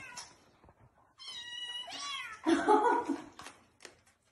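Kittens meowing. A high-pitched meow starts about a second in and slides down in pitch at its end, and more meowing follows, loudest about two and a half seconds in.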